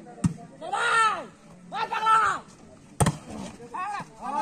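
A volleyball struck twice: a sharp smack just after the start, likely the serve, and a louder smack about three seconds in. Between the two hits come two long, loud shouts whose pitch rises and falls.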